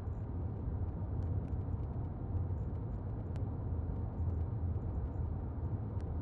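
Steady low rumble of a car driving along at road speed, tyre and engine noise heard from inside the cabin.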